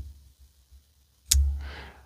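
Titanium frame-lock flipper knife being flicked open: a few faint clicks at the start, then one sharp click about 1.3 s in as the blade swings out and hits its stop, followed by a short soft hiss.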